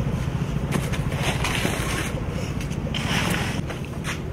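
A steady low rumble under dry, intermittent rustling of corn husks being handled and stripped from ears of sweet corn, the rustles coming in short bursts several times.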